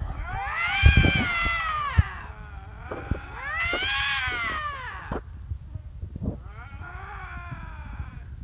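Canada lynx yowling: three long, eerie calls that each rise and then fall in pitch, the third fainter and shorter.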